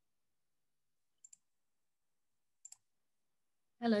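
Two faint double clicks about a second and a half apart, with dead silence between them on the call audio.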